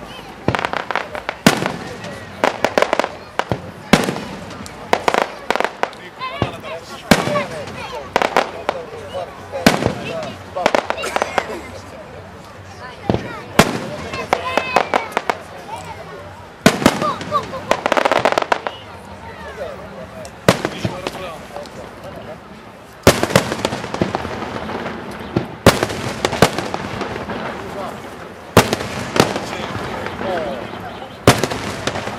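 Aerial firework shells bursting in an irregular series of sharp bangs, some in quick clusters and some echoing after the blast.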